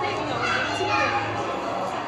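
Indistinct chatter of several people talking over one another, with children's voices among them.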